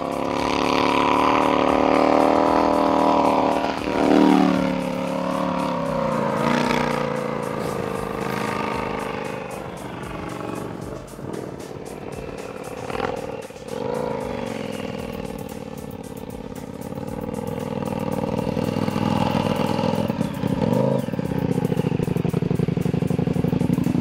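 A custom snow bike's 950 cc KTM V-twin engine runs and revs under load in deep snow, its pitch falling and rising with the throttle, over background music.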